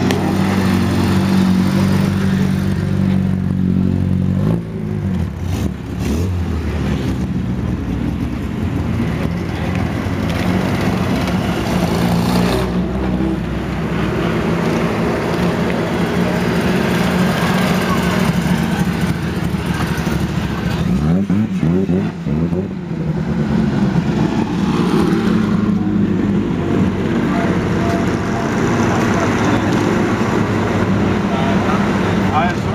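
Engines of vintage racing cars from up to 1947 running loud as the cars drive past, with one engine rising in revs as it accelerates about two-thirds of the way through.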